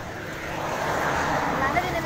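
A passing motor vehicle, its noise swelling to a peak mid-way and easing off, with men's voices nearby.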